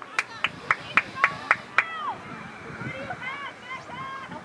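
A quick run of seven sharp claps, about four a second, lasting under two seconds. Then faint high voices call out from the field.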